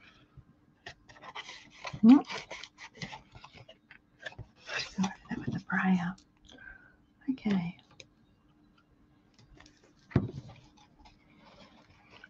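Cardstock being handled, folded and pressed, faint crinkles and light clicks of paper, broken by a few brief murmured, half-voiced words. A faint steady hum underlies it.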